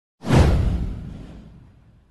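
Whoosh sound effect: a single sudden swoosh with a deep low rumble under it, falling in pitch and fading away over about a second and a half.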